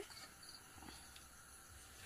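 Near silence: faint room tone with a faint steady high-pitched tone.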